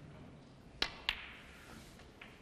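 Snooker cue tip striking the cue ball, then about a quarter second later the cue ball clicking against a red: two sharp clicks.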